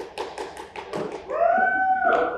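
A quick run of sharp taps, about five a second, for roughly the first second, then a single voice giving a loud, held cheering call.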